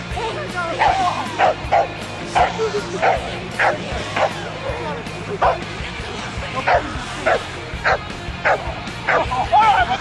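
A dog barking over and over, with a short, sharp bark about every half second, over steady background music.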